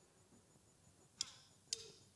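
Two sharp clicks about half a second apart, a little past one second in. They are the start of an even count-in that sets the tempo just before an acoustic guitar comes in.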